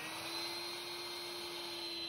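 Small Craftsman wet/dry shop vac running with a steady hum and a faint high whine, vacuuming water out of the bilge around a shower sump pump.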